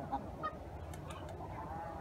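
Hens clucking softly as they feed, a few short low calls from the flock.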